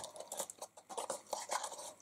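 Faint, irregular scratching and rustling of a metallic ribbon being pulled through a punched hole in a paper gift box, with the paper handled between the fingers.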